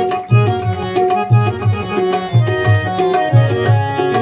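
Instrumental passage of live music: a hand drum keeps a steady rhythm with deep, resonant bass strokes about three a second, over sustained harmonium notes.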